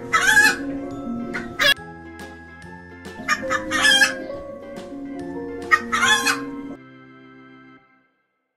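Chickens calling: three loud calls, just after the start, around four seconds in and around six seconds in, over soft background music with steady held notes that stops near the end.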